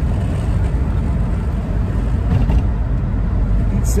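Steady low road and engine noise of a moving car, heard from inside the cabin.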